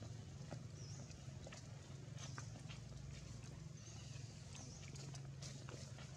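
Faint outdoor background: a steady low hum with scattered light clicks and brief high chirps every second or so.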